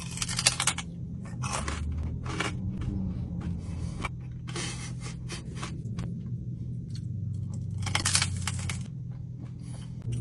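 Crisp fried pork rind (chicharron) being bitten and chewed close to the microphone: loud crackling crunches in bursts, with a big bite at the start, more around the middle and a last run near the end.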